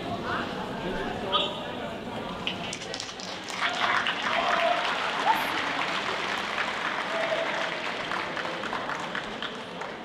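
Audience clapping, rising about three and a half seconds in and fading away near the end, with scattered voices under it.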